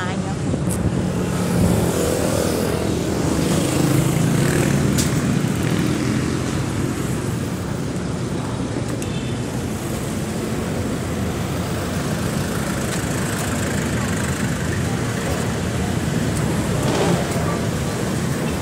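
Steady street traffic noise from passing cars, with an indistinct voice in the first few seconds.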